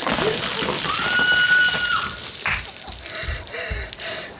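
A bucket of ice water pouring over a person and splashing down onto the floor. A woman's high scream, held for about a second, comes about a second in.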